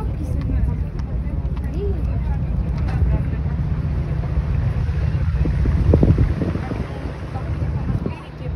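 Wind buffeting the microphone as a loud, uneven low rumble that swells about six seconds in and then eases. Faint voices of people nearby can be heard through it.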